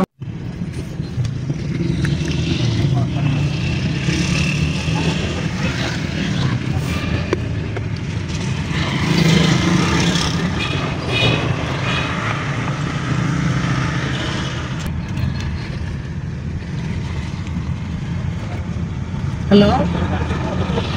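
Steady low road and engine noise heard from inside the cabin of a Honda Elevate as it drives along a street.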